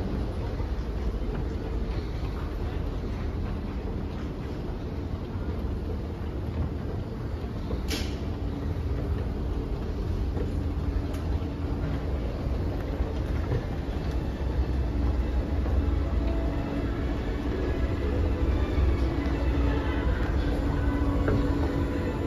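Schindler escalator running: a steady low rumble from the moving steps and drive, with one sharp click about eight seconds in.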